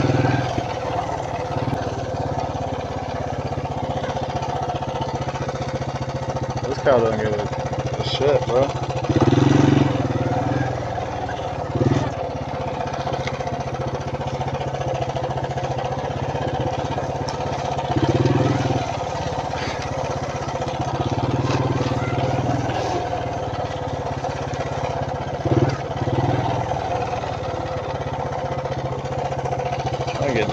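Suzuki Quadrunner LT160 ATV's single-cylinder four-stroke engine running steadily while being ridden over rough grass, swelling louder for a moment a few times, about nine seconds in and again around eighteen and twenty-one seconds.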